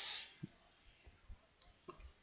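A short breathy hiss at the start, then a few faint computer mouse clicks, scattered singly over a quiet background.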